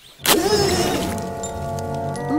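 A sudden loud cartoon sound effect: a crash-like hit about a quarter of a second in that trails off into a noisy rush, over background music.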